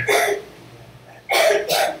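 A man coughs twice in quick succession, about a second and a half in.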